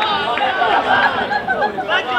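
Several men's voices shouting and talking over one another: footballers on the pitch just after a goal.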